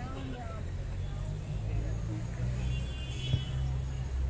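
Outdoor street ambience: a steady low rumble of road traffic with faint voices of people nearby. A brief high-pitched tone sounds about two and a half seconds in, with a sharp tick just after.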